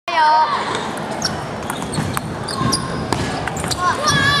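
Table tennis balls clicking sharply off paddles and tables in an irregular patter, from more than one table, with a voice calling out loudly at the start and children's voices in the background.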